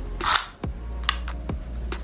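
Small spring-return tape measure: a short rushing burst as the released tape winds back into its plastic case, followed by a few sharp clicks of the case being handled.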